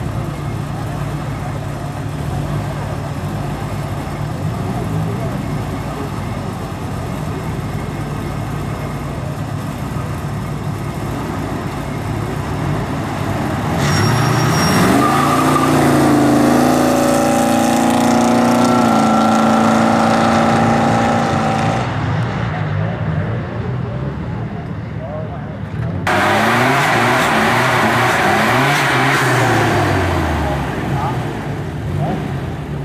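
Car engines idling side by side at a street-race start, then revving hard and accelerating away about halfway through, the engine note rising in pitch and held high for several seconds. After a sudden change near the end, engines rev again, rising and then falling in pitch.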